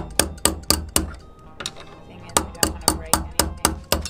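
Metal tool striking the jammed anchor chain at the sailboat's anchor windlass: two runs of sharp metal knocks, about four a second, five strikes and then, after a short pause, seven more. The knocking is an attempt to free a chain link jammed in the windlass.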